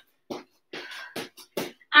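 Jumping jacks with a twist: rhythmic short, sharp sounds of feet landing and quick puffs of breath, about two or three a second.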